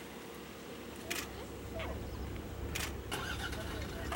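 Safari game-drive vehicle's engine running, its low rumble growing louder about halfway through, with a few short sharp clicks.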